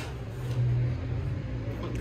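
Low, steady rumble of city street traffic coming in through an open balcony door.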